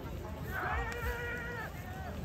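A spectator's long, high-pitched shout, one held call with a nearly steady pitch lasting a little over a second.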